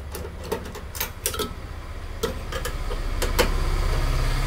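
Irregular metallic clicks and taps from a screwdriver and hands working the mounting screws and metal casing of a microwave oven's magnetron. A low steady hum grows louder near the end.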